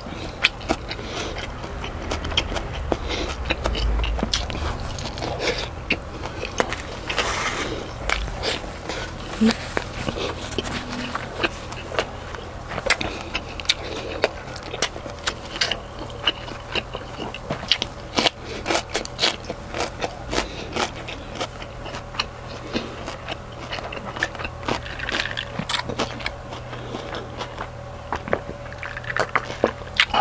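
Close-miked chewing and biting of meat and rice, with many sharp wet mouth clicks and smacks.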